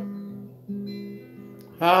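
Acoustic guitar played alone: a chord rings and fades, and a new one is struck about three quarters of a second in. A man's singing voice comes back in near the end.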